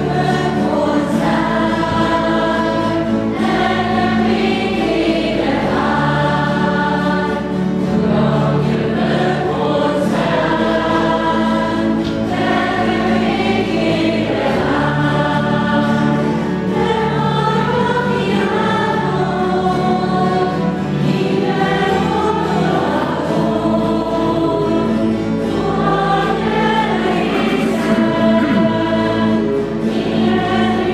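A choir singing a church hymn over held low accompanying notes that shift every few seconds, as the entrance hymn at the start of a Catholic Mass.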